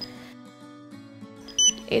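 A handheld RFID card reader gives a short high beep about a second and a half in, over soft background music. The beep signals that it has read a contactless card through the purse.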